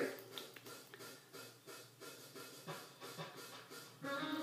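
Faint, soft scratching and small ticks of a makeup brush dabbing silver glitter onto the lips, in a quiet room.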